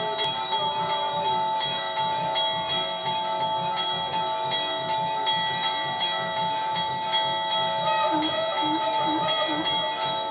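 Temple bells rung continuously for the aarti: several overlapping ringing tones held steady under a quick, even run of strikes.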